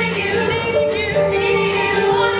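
Women singing a stage musical number, accompanied by a live pit band with a steady bass line and sustained chords.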